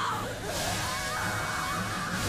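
Anime soundtrack: a woman screaming in agony, a high wavering cry that grows stronger about a second in, over music and a steady rushing noise.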